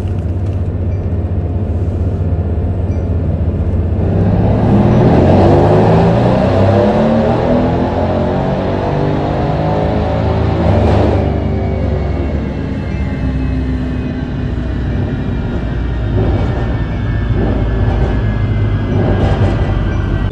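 Mercedes-AMG C63S twin-turbo V8 with catless downpipes and a titanium exhaust, pulling at full throttle on a dyno: the revs climb for several seconds toward the rev limit, then it lets off about halfway through and the engine runs down with a slowly falling whine. Heard from inside the cabin.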